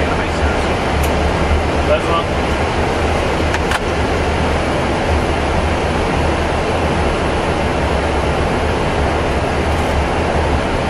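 Steady flight-deck noise of a Boeing 777-300ER in flight on approach: an even rush of airflow with a strong low hum beneath it. A couple of faint clicks come about a second in and near four seconds.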